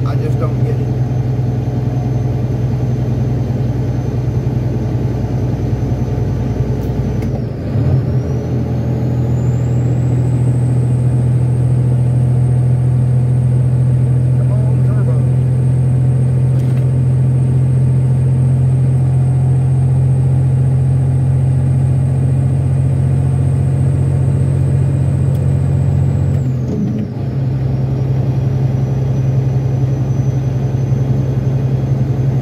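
Steady low drone of a semi truck's diesel engine and road noise, heard from inside the cab while cruising on the highway. The sound shifts about eight seconds in and shifts back a few seconds before the end, with a faint high whine rising and holding in between.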